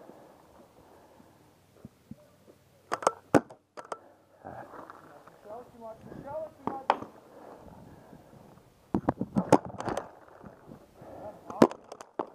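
Paintball markers firing in sharp pops: a few shots about three seconds in, a rapid string of pops around nine to ten seconds in, and a single shot near the end.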